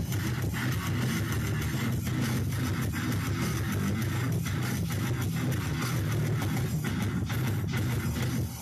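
A goregrind band playing live: distorted electric guitars and bass over drums. The sound is loud and continuous, with many sharp hits.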